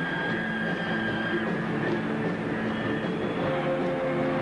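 Live band music: a sustained chord of held notes, with a high note held for about the first second and a half and another high note coming in about three seconds in.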